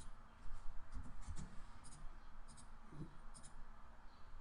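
Light, scattered clicks of a computer keyboard and mouse, about half a dozen keystrokes and clicks spread over a few seconds.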